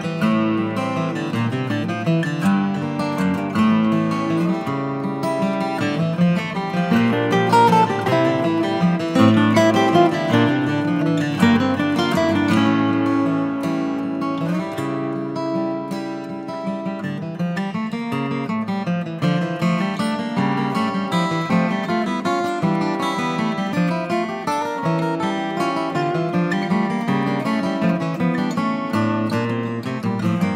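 Instrumental background music led by acoustic guitar, with plucked and strummed notes playing on without a break.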